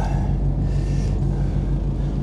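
Mercedes Actros truck's diesel engine idling, a steady low hum heard inside the cab.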